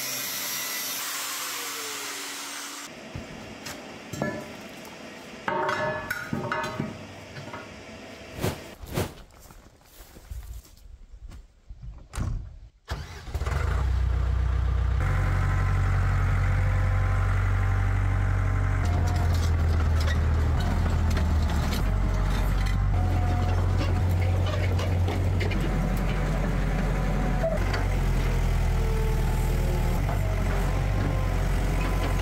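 An angle grinder cutting steel for the first few seconds, then scattered metal knocks and clicks. From about 13 s a Case tracked excavator's diesel engine runs steadily, its low drone rising and falling in level.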